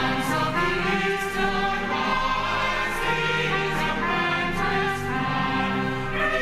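Church choir singing together in sustained, many-voiced chords, coming in loudly at the start after a quieter held chord.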